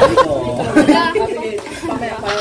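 Several people talking over one another in lively chatter: speech only.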